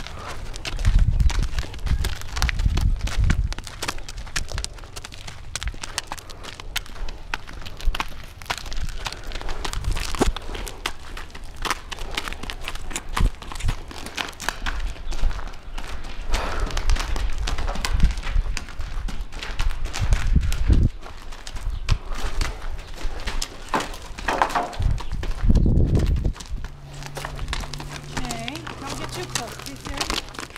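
Hoofbeats of a young Missouri Fox Trotter filly walking on hard ground, an irregular run of short clip-clops, with occasional low rumbles.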